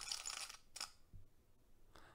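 Sped-up video clip audio playing back in the editor's preview: a short, high, hissy burst for about the first half second and a second brief burst just under a second in, then near silence as the clip ends.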